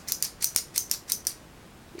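Stainless-steel T-handle fish grabber clicking as its trigger is squeezed and released and its jaws snap open and shut: a quick run of about ten metallic clicks that stops a little past halfway.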